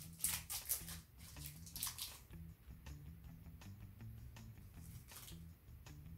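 Faint crunches and rustles from a KitKat wafer bar being bitten and chewed, mostly in the first two seconds and again near the end, over quiet background music.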